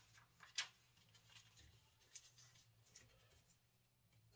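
Near silence, with faint rustles and light taps of paper cover inserts being handled, and one small click about half a second in.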